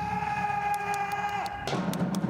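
Drum corps band playing: a single high note held with its overtones, cut off sharply about a second and a half in, over low drum rumble and light ticking percussion.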